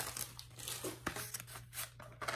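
Tissue-paper gift wrapping rustling and crinkling as it is unwrapped by hand, with a faint tap about a second in.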